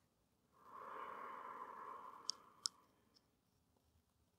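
A woman's long, soft exhale lasting about two seconds, followed by two faint clicks.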